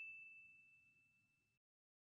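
The tail of a single bright electronic chime, a sound-effect ding for an animated logo, ringing on one steady high note and fading away within the first half second, then near silence.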